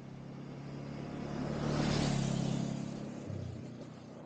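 Motorcycle engine running at a steady speed, with a rush of road and wind noise that swells to its loudest about halfway and then fades. The engine hum cuts off abruptly shortly before the end.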